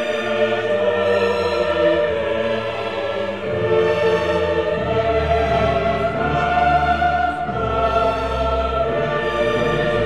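Classical choral music: a choir singing held notes over an orchestra.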